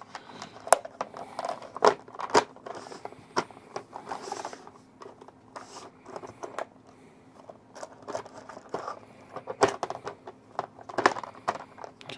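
Plastic bento box lid being fitted and pressed down onto the box: scattered light plastic clicks and knocks at irregular times, with some rustling between them.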